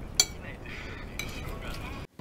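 A metal spoon clinks sharply once against a ceramic soup plate a moment in, with a weaker tap about a second later over faint table and eating sounds.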